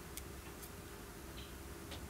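About four faint, light clicks of metal tweezers tapping against a clear plastic card as a small embellishment is set in place, over a steady low hum.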